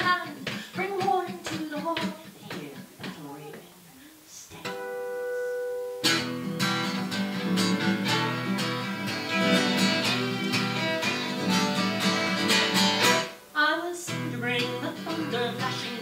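Instrumental break in a live folk song: steel-string acoustic guitar strumming with violin. After the sung line fades, a single steady note is held for about a second and a half, then guitar and violin play together from about six seconds in, dropping out briefly near the end before going on.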